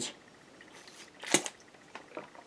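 A quiet pause for a drink from a plastic water bottle with a sport cap, then a single sharp click a little over a second in as the bottle is handled.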